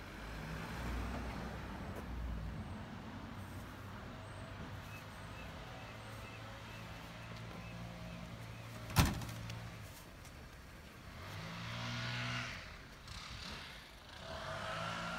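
A motor vehicle's engine running steadily, swelling louder about twelve seconds in. There is a single sharp click about nine seconds in.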